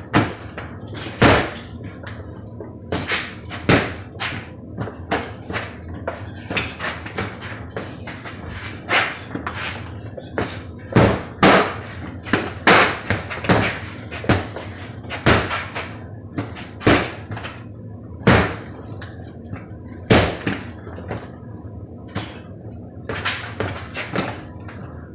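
Sharp, irregular knocks and slaps of training knives striking a hanging ball target, roughly one every second or so, over a steady low hum.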